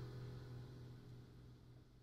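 The final chord of an acoustic guitar ringing out and fading away, with a low note lingering longest.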